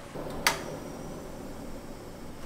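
Aluminium moka pot set down on a portable gas stove's metal pan support: one sharp metal clink about half a second in, with a brief ring after it.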